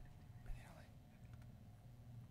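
Near silence: faint, low murmured voices with a steady low hum, and a soft knock about half a second in.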